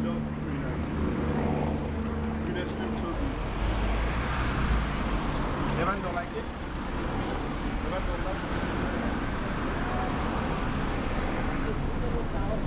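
City street traffic: road vehicles running past, with a steady engine hum in the first few seconds and a low rumble about four seconds in, over a continuous roadway noise.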